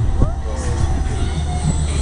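KMG X-Drive fairground ride running at speed, heard from a rider's seat: a steady low rumble of the moving ride.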